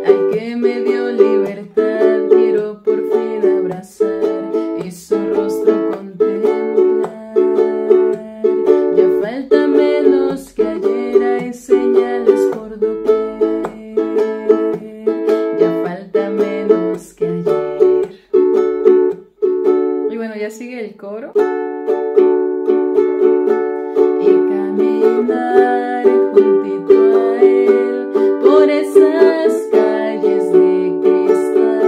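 Ukulele strummed in a steady rhythm, ringing chords that change every second or two. The strumming thins out briefly about two-thirds of the way through, then picks up again.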